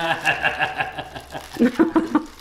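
A voice drawing out a sound at the start, then short chuckling laughter near the end.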